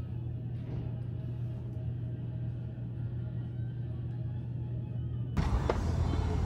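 A steady low hum that stops abruptly near the end, where a louder, fuller background takes over.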